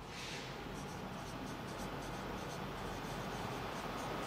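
Marker pen writing on a whiteboard: faint, short strokes of the felt tip against the board, one after another.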